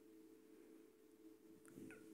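Near silence: room tone with a faint steady hum, and a brief faint sound just before the end.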